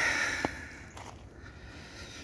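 A man breathing out just after speaking, fading within half a second, with a single sharp click about half a second in; then only faint outdoor background.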